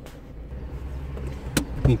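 Car cabin sound while driving: a steady low engine and road hum, with a sharp click about one and a half seconds in.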